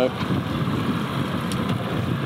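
Boat motor idling steadily under wind and water noise, with a couple of faint clicks near the end.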